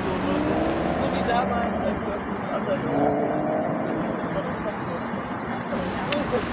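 Steady hum of road traffic rising from the streets far below, with indistinct voices of people close by in the first half.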